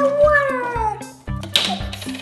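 Background music with a steady beat. Over it, in the first second, one long call slides down in pitch.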